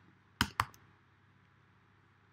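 Three computer keyboard keystrokes in quick succession about half a second in.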